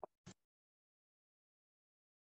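Near silence, broken only by two faint, very short sounds in the first half second.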